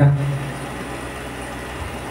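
The last syllable of a man's amplified speech, then a steady, even background hum in the hall through the rest of the pause.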